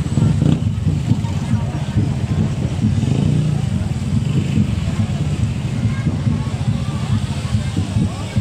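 Small motorcycles passing close one after another, their engines running with a steady low rumble, amid people's voices.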